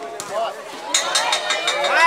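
Spectators' voices shouting and chattering around a volleyball rally, with a quick run of sharp claps starting about a second in.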